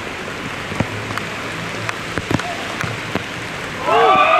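Heavy rain falling on a hard outdoor court: a steady hiss with scattered sharp taps. Near the end, loud shouting voices break out.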